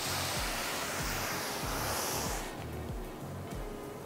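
A fabric strip brushed and smoothed by hand against a design wall, giving an even rustling hiss that stops about two and a half seconds in. Soft background music with a low repeating beat runs underneath.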